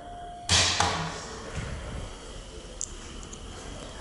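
Elevator hall call button pressed, giving a short steady beep. About half a second in comes a sudden whooshing thump that fades over a second into a low, steady lobby hum.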